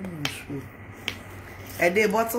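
Three sharp clicks in a pause in a woman's speech, which trails off at the start and resumes near the end.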